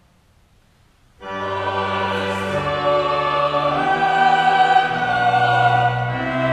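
A church choir comes in together about a second in, after a short hush, and sings slow, sustained chords.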